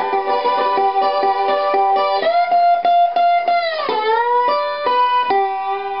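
Metal-bodied Republic tricone resonator guitar played with a bottleneck slide in a blues fill: picked notes ring on, and about four seconds in a note glides down in pitch before the next one.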